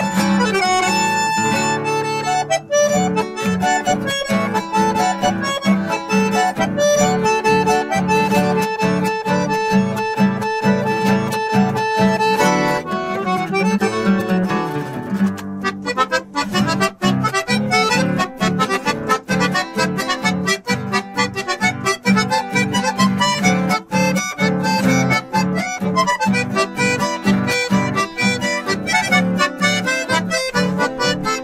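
Instrumental folk duet of a Piermaria button accordion and an acoustic guitar. The accordion holds long sustained notes over the guitar's chords for the first half, then about halfway through the playing turns rhythmic, with quick, evenly repeated chords.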